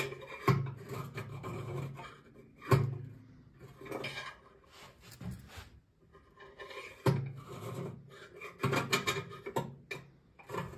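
A screwdriver scraping the inside bottom of a BSA Ariel 3's fuel tank through the filler opening, in a run of rasping strokes. The loudest strokes start with a sharp scrape about half a second, three seconds and seven seconds in, with a short pause around six seconds. It is scraping at varnishy crud on the tank floor, which the owner takes for stale-fuel varnish and not rust, and suspects of starving the engine of fuel.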